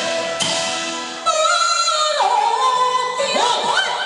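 Taiwanese opera (gezaixi) singing with instrumental accompaniment. The band plays alone at first; about a second in, a singer comes in loudly, holding notes with vibrato, then steps down to a lower held note and ends in rising, sliding melismatic turns.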